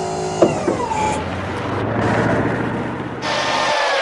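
Cartoon sound effect of a tow truck's winch hoisting a car: a click and a falling whine about half a second in, then a grinding motor with a low hum. About three seconds in it gives way to a different steady vehicle running sound with a slowly falling tone.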